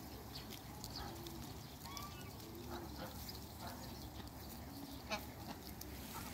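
Domestic geese and Muscovy ducks calling softly: short, low calls repeated about once a second, with a higher call about two seconds in. Light clicks are scattered throughout, and a sharp click a little after five seconds is the loudest sound.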